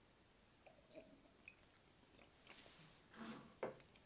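Near silence with faint mouth sounds from tasting a sip of whisky: soft smacks and small wet sounds as the spirit is held and worked in the mouth, a little stronger about three seconds in.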